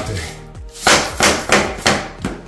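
Heavy-duty tapping block knocking four times against the edge of a vinyl plank, a sharp knock every third of a second or so, tapping the plank into its click-lock joint.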